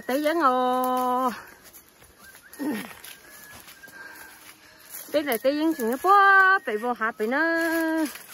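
A person's voice in two long, drawn-out, sing-song phrases with held notes that slide between pitches, one at the start and one in the last three seconds, with a quieter gap between them holding a short falling cry.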